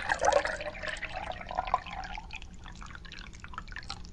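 Water dripping and plinking in many quick drops, dense and loud at first, then thinning out and growing quieter.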